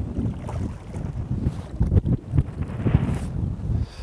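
Wind buffeting the microphone over choppy lake water, with a hooked crappie splashing at the surface beside the boat. The rumble is uneven, with a few brief, sharper splashes and knocks.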